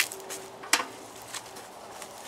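A small metal brazier grill being handled and repositioned: one sharp metal clank about three quarters of a second in, then a fainter click.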